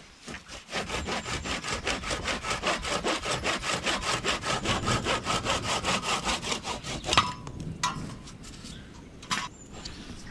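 Hand saw cutting through a cork branch in quick, even back-and-forth strokes. The sawing stops about seven seconds in, followed by a few light knocks.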